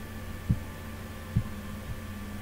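Steady low electrical hum with two dull, low thumps: one about half a second in and another about a second later.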